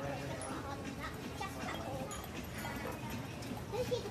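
Indistinct conversation: several people's voices talking at a table, without clear words.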